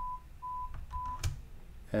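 Audiometer simulator presenting a pulsed 1000 Hz pure-tone test stimulus: three short beeps about half a second apart. This is the stimulus just raised to 35 dB HL in a masked threshold search.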